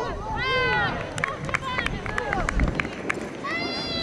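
High-pitched voices shouting and calling out across an outdoor soccer field during play: several long calls, with a quick run of short sharp clicks about a second in, over a steady low outdoor rumble.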